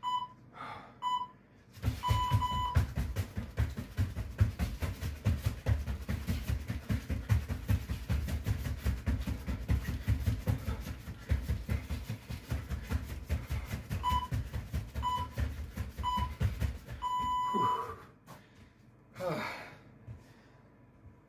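Interval timer beeping short beeps and then a long start beep, followed by about 15 seconds of rapid thudding from feet landing on the floor during fast jumping jacks with overhead punches. Near the end the timer gives three short beeps a second apart and a long final beep, then a heavy out-breath.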